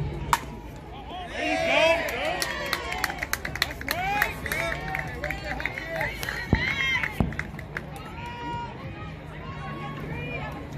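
One sharp crack of a bat hitting a softball just after the start, followed by several seconds of players and spectators yelling and cheering with scattered claps.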